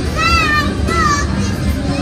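Two short, high-pitched vocal calls, each rising and falling, over a steady murmur of background chatter.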